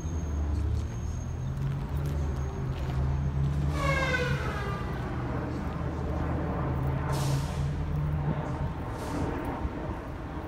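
Steady low rumble of city traffic and vehicle engines. About four seconds in comes a falling whine, and about seven seconds in a short hiss of air.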